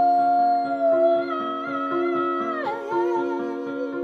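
A woman singing a long wordless held note that drops lower about two-thirds of the way through and goes into a wavering vibrato, over steady sustained instrumental chords.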